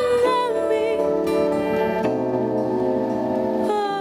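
Worship song: a woman's held sung note with vibrato ends just after the start, then the instrumental accompaniment carries on in steady sustained chords, her voice coming back briefly with a falling line near the end.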